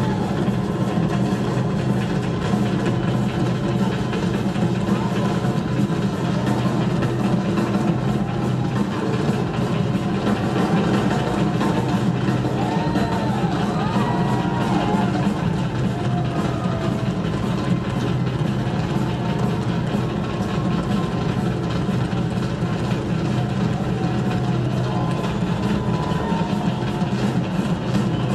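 A rock drum kit played live in a drum solo: fast, unbroken drumming with cymbals, recorded from the audience in a concert hall.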